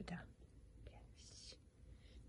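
Near silence with a softly whispered word at the start and a brief faint hiss a little over a second in.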